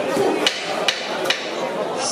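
Three sharp knocks, evenly spaced a little under half a second apart, struck at ringside just before the round begins: the timekeeper's signal to start the round.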